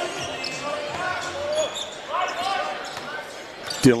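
Basketball being dribbled on a hardwood court, with voices calling in the arena.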